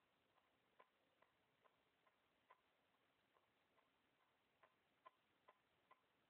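Near silence with a faint, regular ticking, about two to three ticks a second, some ticks louder than others.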